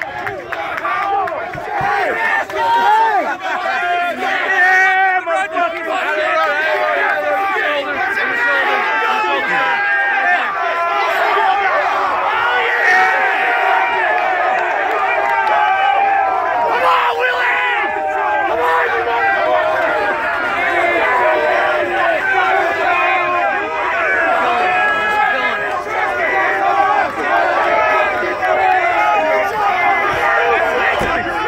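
A crowd of men shouting all at once around a truck, many loud voices overlapping without a break.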